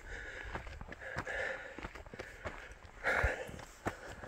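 Footsteps on a dry, gravelly dirt track and a man's heavy breathing as he walks up a steep hill, out of breath from the climb. Two louder breaths stand out, one about a second in and another about three seconds in.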